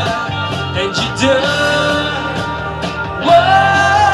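Live pop music: a male tribute singer's amplified vocals over a steady drum beat, holding a long sung note from about three seconds in.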